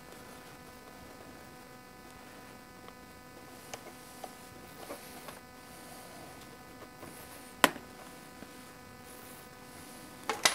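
A plastic air filter cover is taken off a small engine with a screwdriver, giving a few light clicks and one sharper click about three-quarters of the way through. A faint, steady electrical hum runs underneath.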